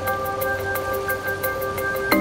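Background music: soft held tones and short notes with a light, evenly spaced tick.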